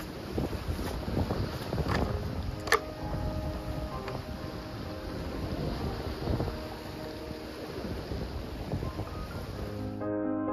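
Wind buffeting the microphone over the sound of sea swell on rocks, with two sharp clicks about two and three seconds in. Faint background music runs underneath.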